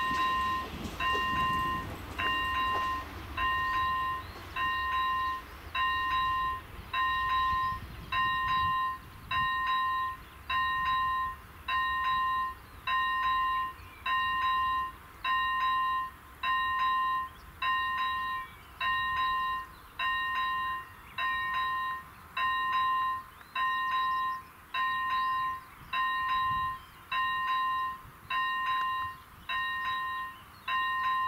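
Level-crossing warning bell sounding an electronic tone, repeating evenly about four times every three seconds while the crossing stays closed. The low rumble of a train that has just passed fades out in the first few seconds.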